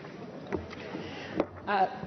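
Steady low background noise of a large assembly hall, broken by two short knocks, then a woman begins to speak near the end with a hesitant "uh".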